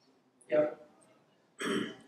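A man clearing his throat: two short bursts, one about half a second in and one near the end.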